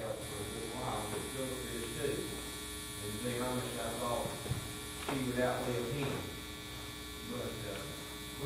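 Indistinct speech from people in the room, over a steady electrical hum and buzz.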